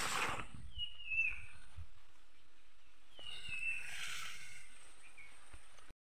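A bird calling twice, a short falling chirp about a second in and again about three seconds in, over quiet rural outdoor ambience with a faint steady high hiss. A brief rustle of plants being handled at the very start.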